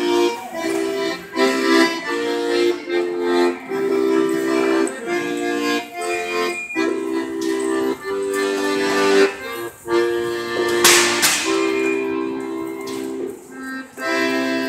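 Piano accordion playing a tune: chords held and broken off in short rhythmic phrases, with a melody above. A brief noisy burst cuts across the music about eleven seconds in.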